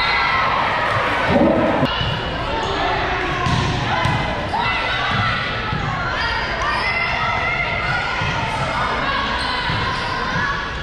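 Volleyball rally in a gymnasium: the ball is struck and hit the floor, with a loud thump about one and a half seconds in, while players and spectators shout and call out throughout, echoing in the large hall.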